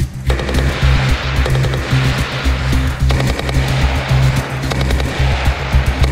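Bursts of rapid machine-gun fire from the gun mounted on a tracked MAARS armed robot, over background music with a steady bass line.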